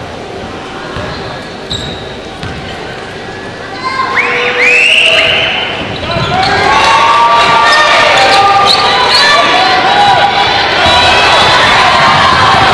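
Gymnasium game sound: a basketball bouncing on the hardwood court with shouting voices over it, turning much louder about four seconds in as play breaks around the basket.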